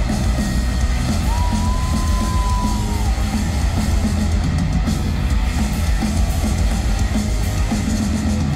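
Live rock band playing loud at concert volume, heavy on bass and drums. A single held high note comes in about a second in and lasts about two seconds.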